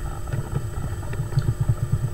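A low engine rumble in the background, pulsing about ten times a second and getting stronger about halfway through.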